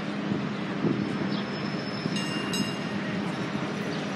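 Steady outdoor rumble with a constant low hum underneath. A few short high chirps and a brief high whistle-like tone come about two seconds in.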